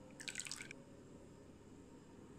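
Hot milk-and-agar pudding mixture dripping from the lip of a pan into a plastic pudding mould: a brief spatter of drips lasting about half a second, near the start.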